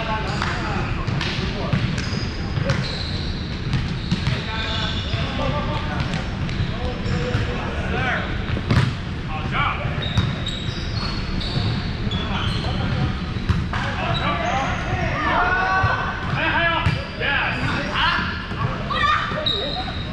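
Volleyball play on a hardwood gym floor: the ball being struck and bouncing several times, the sharpest hit about nine seconds in, with sneakers squeaking and players' voices calling across the large hall.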